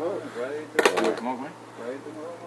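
Soft talking voices, with a short cluster of sharp clicks just under a second in.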